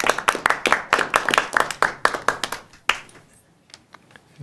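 A small group of people clapping their hands in applause, the clapping thinning out and dying away about three seconds in.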